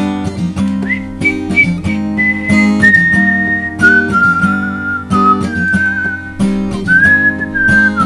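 Acoustic guitar strummed in a steady rhythm, with a person whistling the melody over it: the whistling comes in about a second in as a line of held notes that step downward in pitch.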